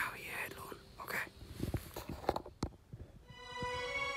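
A man whispering in short breathy phrases, with a few sharp clicks, then soft background music fading in near the end.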